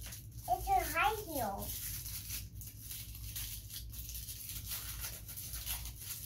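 Small plastic accessory wrapper being crinkled and torn open by hand, with scattered sharp crackles. A child's short vocal sound comes about half a second in.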